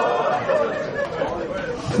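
Speech only: a man talking into a microphone, with other voices chattering along with him.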